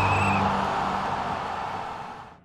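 Logo-reveal sound effect: a whooshing swell with a low hum and a high ringing tone that stops about half a second in, then fades steadily away.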